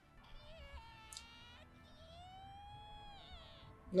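Faint anime soundtrack playing quietly: a high, drawn-out voice with gliding pitch over background music, one long rising-then-falling tone in the middle.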